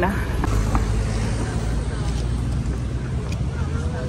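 Street noise: a steady low rumble of road traffic.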